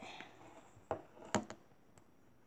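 Handling noise from a camera being picked up after a drop: a faint rustle, then two sharp knocks about half a second apart.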